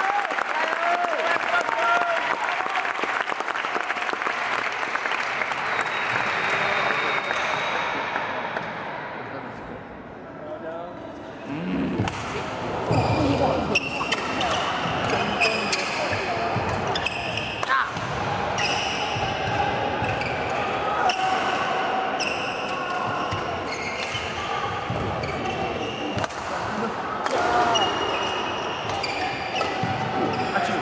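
Badminton doubles play in a large sports hall: sharp racket strikes on the shuttlecock and players' footwork on the court, over a steady background of voices in the hall. The sound drops for a short lull about a third of the way in, then a rally picks up again.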